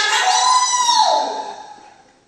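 A performer's voice giving one long, high cry that slides down in pitch about a second in and fades away.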